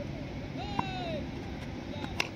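A distant, drawn-out shout that rises and then falls in pitch, over steady background noise, with a single sharp tap a little before halfway.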